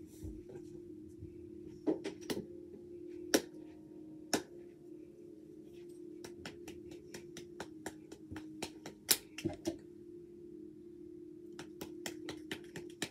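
Hand claps from a children's hand-clapping game: a few separate claps, then a quicker run of claps through the middle, over a steady low hum.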